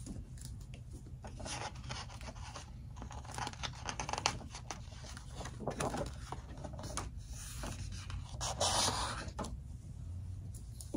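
Paper rustling and rubbing as a hardcover picture book's page is handled and turned, in short scrapes with a longer swish near the end.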